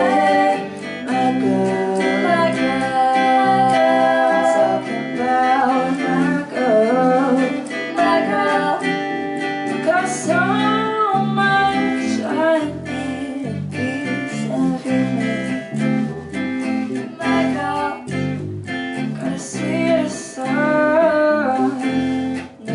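Live soul song performance: a guitar strummed steadily under female vocals sung into microphones.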